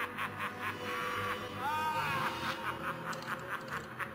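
A man's long, gloating villain's laugh: a rapid string of 'ha-ha's, about five a second, with a drawn-out rising-and-falling cry near the middle.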